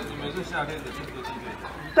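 Quiet chatter of several people's voices.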